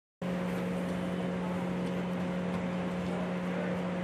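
A steady low hum, one held tone with a fainter higher one above it, over a constant outdoor background hiss.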